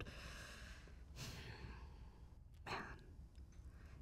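A person's breathy sigh into a close handheld microphone about a second in, over a faint hush, followed by the single spoken word "Man" near the end.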